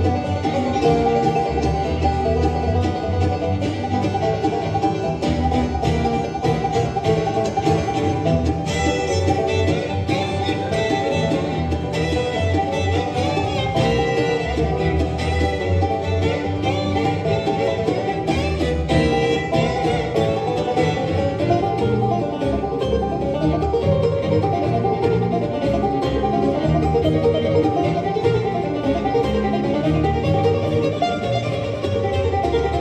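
Acoustic bluegrass band playing an instrumental tune live: banjo to the fore, with fiddle, acoustic guitar, mandolin and upright bass.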